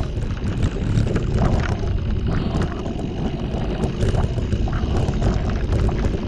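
Mountain bike ridden fast over a stony dirt trail: a steady rumble from the knobby tyres, with many small clicks and knocks as the bike rattles over loose rocks, and wind buffeting the microphone.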